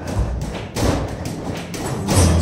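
Acoustic guitar played percussively: irregular thumps and taps on the body and muted strings, with no clear notes ringing, leading back into the song.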